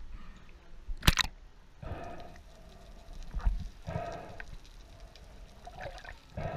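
Sea water sloshing and gurgling around a camera bobbing at the surface, in irregular surges, with one sharp knock or splash about a second in.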